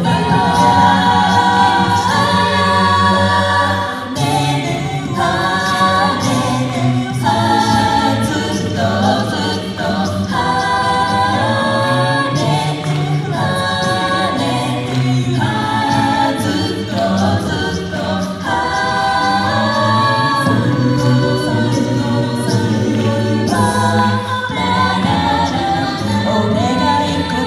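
Mixed male and female a cappella group singing a pop song in close harmony, several voice parts sustaining chords under a lead line, with vocal percussion keeping a steady beat.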